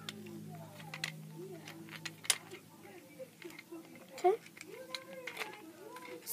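A child's voice, quiet and indistinct, murmuring under her breath, with a few sharp clicks; the loudest clicks come a little over two seconds in and a little after four seconds.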